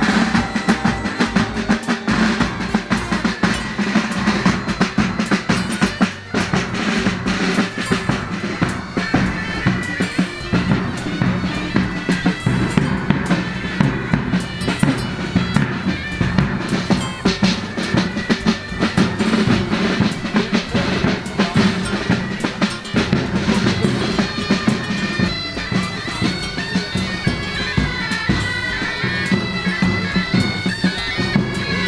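Pipe band playing: bagpipes sounding a melody over their steady drone, with side drums beating throughout.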